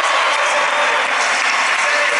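A large arena crowd applauding: dense, steady clapping.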